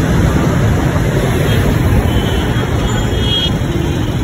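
Steady rumble of city road traffic passing close by, with faint voices in the background.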